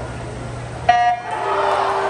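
Electronic starting horn of a swim meet sounding one short, loud tone about a second in, the start signal for the race.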